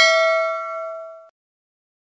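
A notification-bell chime sound effect ringing out on several steady tones and fading, then cutting off about a second in.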